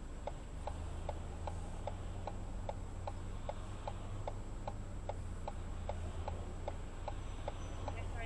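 A car's turn-signal indicator ticking steadily inside the cabin, about three ticks a second, while the car waits to turn left, over a low steady hum.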